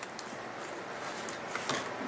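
Quiet steady background hiss with a few faint light clicks from craft pieces being handled on a table.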